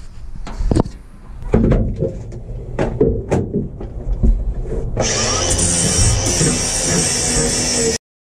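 Angle grinder with a flat disc starting abruptly about five seconds in and grinding down protruding screw tips, a steady high whine over grinding hiss. Before it, knocks and clatter as the tool and boards are handled.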